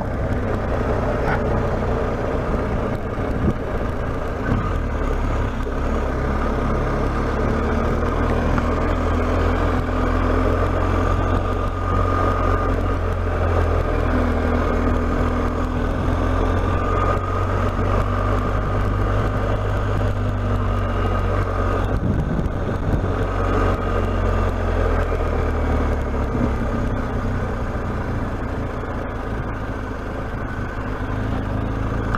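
Motorcycle engine running at low road speed, heard from the rider's helmet with wind and tyre noise, steady with a short change about two-thirds of the way through and easing off near the end.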